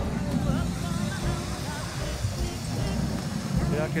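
Background music from the light show's loudspeakers mixed with the voices of people around, over a steady low rumble on the microphone.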